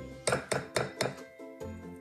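Background music with steady tones and four sharp, evenly spaced strokes, about four a second, in the first second.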